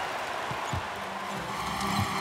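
Steady murmur of a large arena crowd during live basketball play, with a few low thuds of a basketball being dribbled on the hardwood floor.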